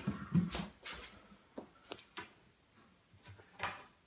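Pneumatic air stapler firing staples into a wooden panel frame: a series of about eight sharp snaps, irregularly spaced, with short gaps between shots.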